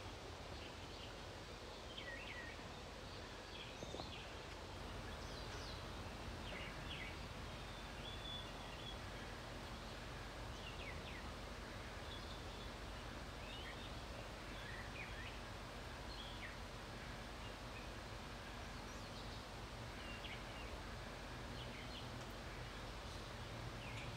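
Faint outdoor ambience: a steady low background hum with short, high chirps of small birds scattered throughout, several every few seconds.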